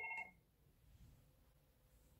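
FortiFone 475 IP phone's ringtone, a short chime of several steady tones, cutting off about a third of a second in as the call is answered; then near silence.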